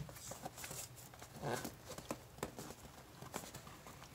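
Fingers tapping, knocking and scraping on a small cardboard shipping box as its tight flaps are worked open: a run of irregular light taps and rubs.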